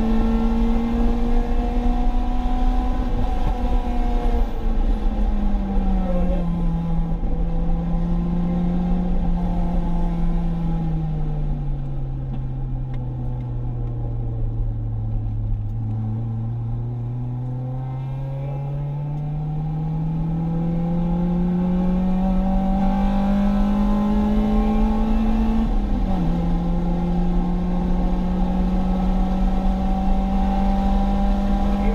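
Acura RSX Type-S's K20 four-cylinder engine heard from inside the cabin under track driving: the engine note falls away over several seconds as the revs drop, then climbs steadily back up under acceleration. Near the end the pitch drops suddenly with an upshift and carries on at high revs.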